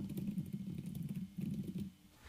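Typing on a computer keyboard: a quick, irregular run of keystrokes with a short pause just past a second in.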